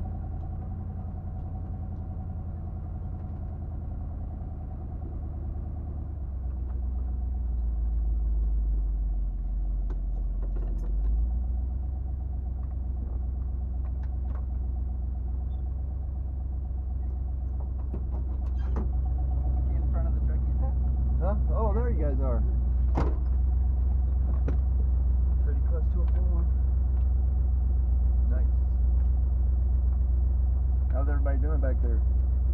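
The engine of a 1977 Jeep Cherokee, heard from inside the cab, running low and steady as it creeps along a dirt track and then idles at a standstill. Faint voices come in during the second half.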